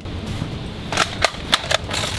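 Four or five sharp clicks in quick succession, about a quarter second apart, starting about a second in.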